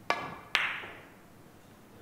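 Carom billiard shot: two sharp clacks about half a second apart, the cue tip striking the cue ball and then the cue ball hitting an object ball, the second the louder, with a short ringing tail.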